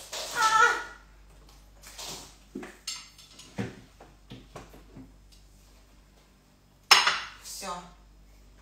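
Dishes and containers clattering and clinking as things are moved about on refrigerator shelves: a string of short knocks, with the loudest sharp clatter about a second before the end.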